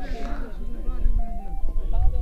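Open-air ambience of faint distant voices and a faint melody with short stepped notes, over a steady low rumble of wind on the microphone.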